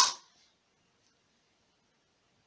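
A voice ends a drawn-out word in the first moment, then near silence: room tone.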